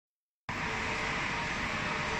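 Silence, then about half a second in a steady machinery hum and noise starts abruptly and runs on evenly: the background running of a factory floor.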